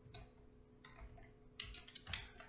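A few faint, scattered keystrokes on a computer keyboard over a faint steady electrical hum.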